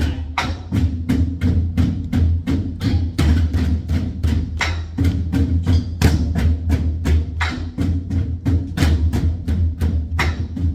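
A group of nanta drummers striking large barrel drums with wooden sticks in unison, a steady driving rhythm of sharp, clicking strokes at about four a second, played as the Korean train rhythm (gicha jangdan).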